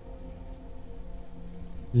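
Steady rain falling, with a faint steady hum beneath it.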